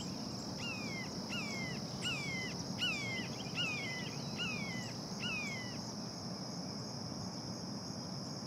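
Outdoor field ambience: a steady high insect trill, like crickets, with a bird calling a series of about seven downslurred whistled notes, roughly one every three quarters of a second, that stop about six seconds in.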